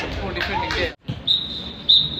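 Shouting voices for about a second, then a sudden cut. About a third of the way later a long, steady, high-pitched referee's whistle blast starts, with a short break near the end.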